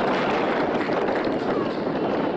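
Steady outdoor noise from a football pitch, with faint shouts of distant players in it.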